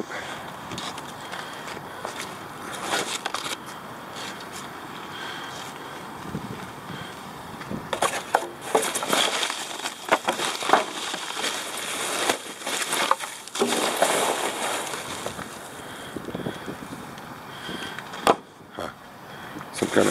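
Plastic sheeting, paper and cardboard crinkling and rustling as a gloved hand digs through dumpster trash, with scattered clicks and knocks, busiest in the middle.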